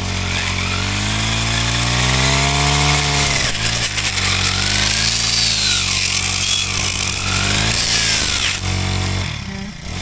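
Brush cutter with a toothed disc blade running and cutting into a burnt stump, its pitch rising and falling several times as the blade works. The motor winds down near the end.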